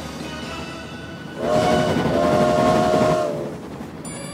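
A train horn sounds over the rushing noise of a passing train, loud for about two seconds starting a second and a half in, its chord briefly broken partway through. Orchestral music plays quietly underneath.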